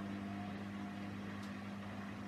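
Beko washer-dryer running with a steady, even electrical hum and no sound of tumbling or sloshing.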